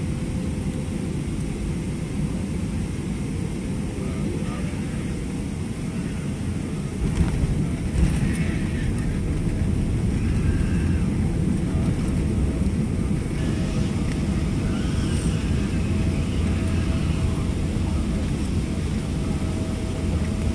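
Cabin noise of a Boeing 777-300ER on its final approach: a steady deep rush. About seven seconds in, two sharp thumps mark touchdown, and then a louder, lower rumble follows as the airliner rolls out along the runway.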